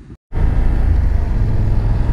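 BMW F 850 GS Adventure's parallel-twin engine running steadily while riding at moderate road speed, heard with wind and road rumble on the bike-mounted camera. It cuts in loud after a brief moment of silence at the start.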